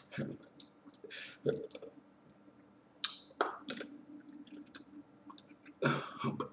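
Scattered, uneven clicks and taps mixed with short breathy puffs, made by a person using sign language: hands meeting as they sign, and unvoiced mouth noises.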